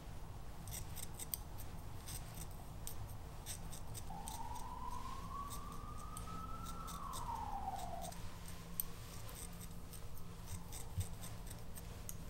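Barber's hair-cutting scissors snipping hair close to the microphone: many quick, crisp snips in irregular runs. A faint tone rises and then falls in the middle.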